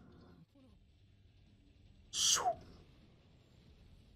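One short breathy exhalation from a person, like a sigh or gasp, with a brief falling pitch, about two seconds in. Otherwise near quiet.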